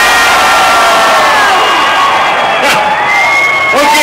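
Large crowd cheering and whooping, many voices yelling at once.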